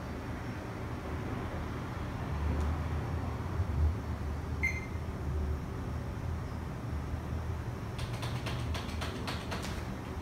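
Desktop PC starting up, with a low steady hum under a single short high beep about halfway through. From about eight seconds in comes a run of keyboard key clicks.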